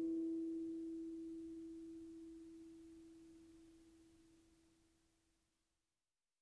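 A single harp note left ringing and fading away over about five seconds.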